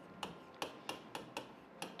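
A pen tip tapping against a board while writing, a series of short, light clicks.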